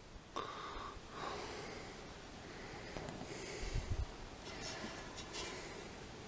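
Faint breathing close to the microphone, a few soft breaths spread over the seconds, with a soft low bump of handling noise about four seconds in.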